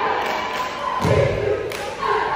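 Cheerleaders stomping in unison on a gym floor, with a heavy thump about a second in. Crowd noise echoes in the large hall throughout.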